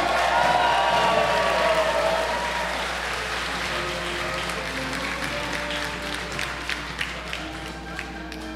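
Audience applauding in a large chamber, with voices calling out in the first couple of seconds; the applause gradually dies down while music plays underneath.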